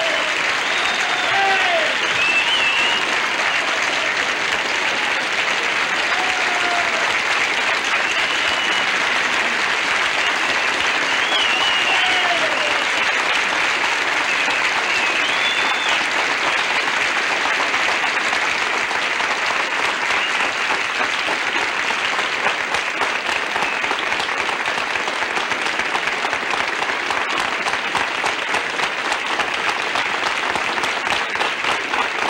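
Studio audience applauding steadily, with a few cheers rising over the clapping in the first half. Near the end the clapping thins, so single claps stand out.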